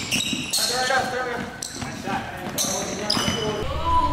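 Basketball bouncing on a gym's hardwood floor, with indistinct voices in the hall.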